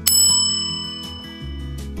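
A single bright chime struck once, ringing with several high tones that fade away over about a second and a half, used as a transition sound effect between news stories.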